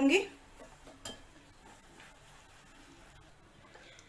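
Metal wire whisk stirring semolina and curd in a glass bowl, faint and irregular, with a light clink about a second in.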